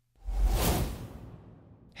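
An edited-in whoosh transition effect with a deep rumble underneath. It swells up quickly a fraction of a second in and fades away over the next second or so.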